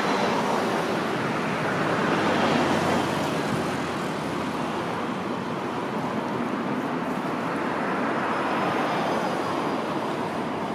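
Road traffic going past: a steady rush of tyre and engine noise that swells as vehicles pass, loudest about two to three seconds in and again near the end.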